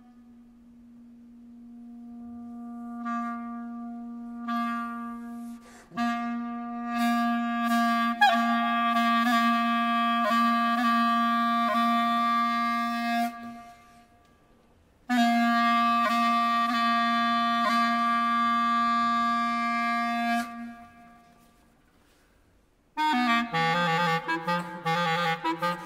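Solo clarinet holding long, sustained low notes. The first swells up from soft, and each later one fades away into near silence. Near the end the clarinet breaks into a quick run of notes.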